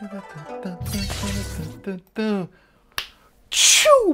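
Show intro jingle: musical tones and a voice, a noisy swoosh, then a single sharp snap about three seconds in and a short hiss just before the speech begins.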